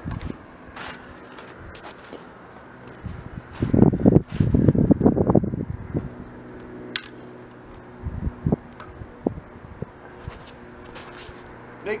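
Rustling and handling noises as a 12-gauge shotgun is loaded and readied at a shooting bench, loudest for about two seconds in the middle. A single sharp click follows, then a few light knocks, over a steady low hum; no shot is fired.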